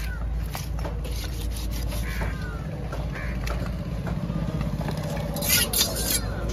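A large knife slicing through a yellowfin tuna and scraping against a wooden chopping block, with short knocks and a louder burst of sharp scraping strokes near the end. Busy fish-market background noise with a steady low hum and distant voices runs underneath.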